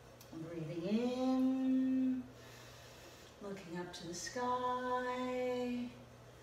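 A woman's voice chanting a long held note on the out-breath, twice, each note sliding up into a steady pitch, with a breath drawn in between.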